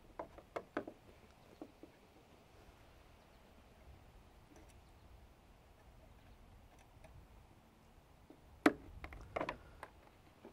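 Quiet background broken by a few small clicks and taps of hand tools handled on a plywood work board as a short piece of tubing is measured and cut, with a sharper cluster of clicks near the end.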